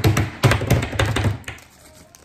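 A quick drumroll of rapid taps, stopping about a second and a half in.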